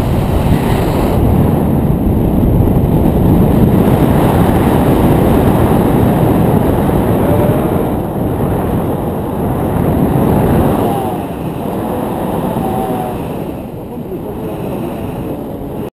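Airflow buffeting the camera's microphone during a tandem paraglider flight: a loud, steady rumble of wind noise that eases somewhat in the last few seconds.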